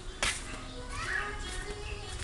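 Children's voices and music in the background, with one sharp knock about a quarter of a second in.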